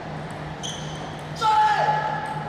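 Table tennis match in a hall: a brief high squeak a little after half a second in, then a louder, held high-pitched squeal from about one and a half seconds in that drops in pitch partway through, typical of shoes on the court floor or a player's cry as the point ends.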